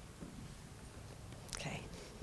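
Quiet room with faint murmured voices, and one brief short sound about one and a half seconds in.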